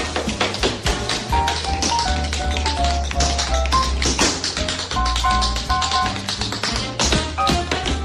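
Jazz music with tap dancing: rapid, dense tap-shoe strikes over a short-note melody line and a steady bass.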